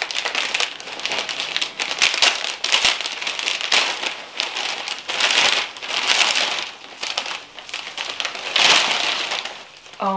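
Clear plastic plant sleeve crinkling and rustling in repeated surges as it is worked off a potted plant, with loose packing peanuts rattling and pattering down inside it.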